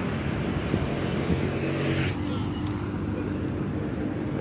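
Road traffic: vehicle engines passing on the road, a steady low rumble with an engine hum. A wash of tyre and engine noise fades out about halfway through.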